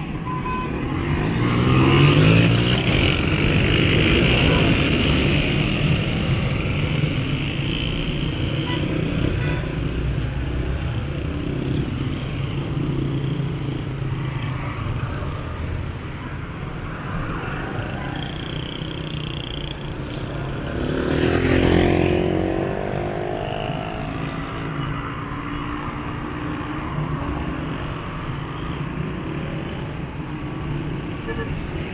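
Busy street traffic of cars and small motorcycles passing close by. An engine revs up as it pulls away about two seconds in, and another vehicle accelerates past a little after the middle.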